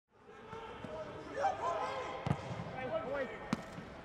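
Football players shouting and calling to each other on the pitch, with no crowd noise, and the ball struck twice with sharp thuds, about two and a quarter and three and a half seconds in.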